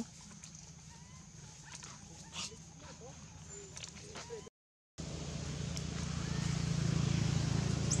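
A few short, faint squeaks from macaques in the trees. About halfway through the sound drops out briefly, then a louder steady rushing noise swells toward the end.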